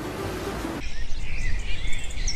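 A steady hiss cuts off a little under a second in. Outdoor ambience with birds chirping follows.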